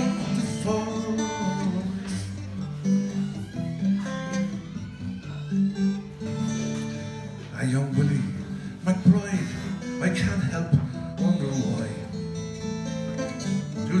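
Acoustic guitar strummed and picked alone, an instrumental break between verses of a slow folk ballad.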